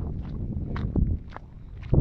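Footsteps crunching on a dry, stony dirt track, several steps at an uneven pace, over a low rumble.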